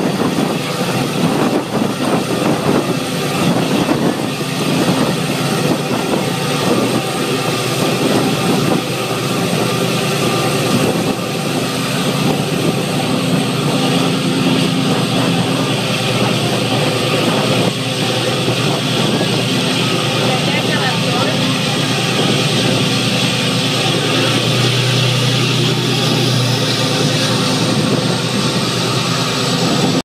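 A tour boat's engine running steadily with a low hum, under a rush of wind and churning water.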